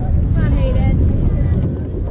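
Voices of spectators, one calling out briefly about half a second in, over steady wind rumble on the microphone.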